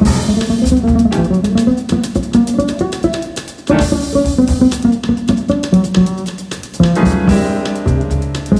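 Live samba-jazz: a plucked acoustic double bass playing a busy, fast-moving line over a drum kit, with cymbal strokes throughout and a brief drop in level about three and a half seconds in.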